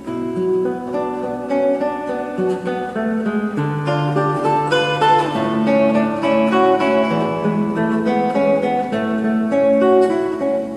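Solo nylon-string classical guitar played fingerstyle: a melody of plucked notes over held bass notes.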